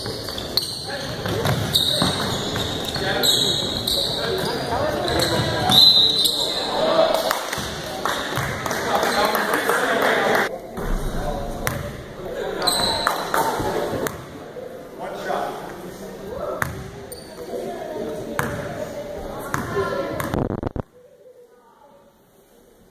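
Indoor basketball game: players and spectators calling out over a bouncing basketball and brief high sneaker squeaks, echoing in the gym hall. The sound cuts off suddenly near the end.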